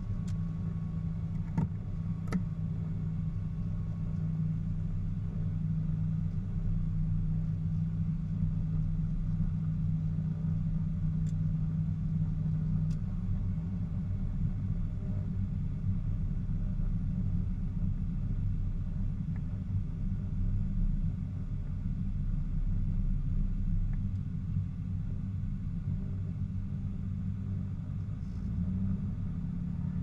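The twin piston engines of a 1976 Aero Commander 500S Shrike Commander, Lycoming IO-540 six-cylinders, running at low power as a steady low drone heard from inside the cockpit during the taxi. A couple of light clicks come about two seconds in. Near the end the engine note starts to rise as the throttles are advanced toward 2000 RPM for the takeoff run-up.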